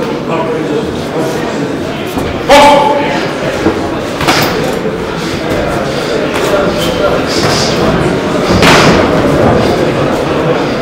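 Boxing gloves landing punches: a few sharp hits, the loudest about two and a half seconds in, over shouting voices echoing in a large hall.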